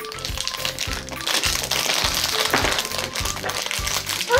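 Foil blind bag crinkling as it is shaken open and emptied, its small plastic figure pieces clattering out onto the table, loudest a little over a second in. Background music with a steady beat runs underneath.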